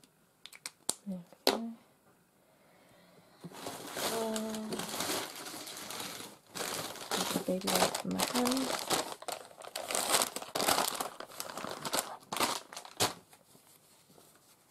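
Crinkling and rustling of a plastic bag being handled and rummaged through for several seconds, irregular and close, after a few light taps at the start.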